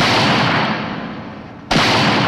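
Two handgun shots, one at the start and another near the end. Each starts suddenly and dies away in a long echoing decay.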